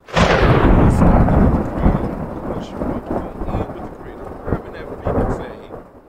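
A loud thunderclap that sets in suddenly and rolls on as a deep rumble, slowly fading, with a second swell about five seconds in.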